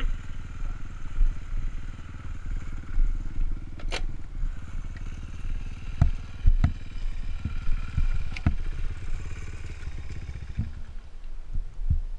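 Small dirt bike engine idling steadily, with a few sharp knocks and clatter scattered over it.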